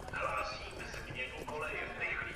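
Railway station public-address announcement in Czech from the automated HaVIS system, heard over the station loudspeakers, announcing a track change for express train R 884.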